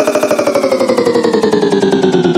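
Dubstep riddim synth bass in a very fast, even stutter, its pitch gliding steadily downward.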